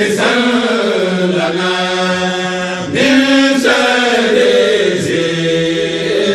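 Chanting of an Arabic devotional poem (a qasida with "ya Allah" refrains), sung in long drawn-out phrases with held, wavering notes.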